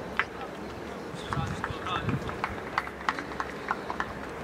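Football match sound on the pitch: short shouts and calls from players and coaches, with a few short knocks over a steady outdoor background.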